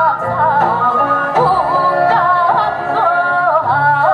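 Women singing a Korean traditional-style song through a PA, the melody wavering in wide, bending ornaments over an amplified instrumental accompaniment with a steady bass.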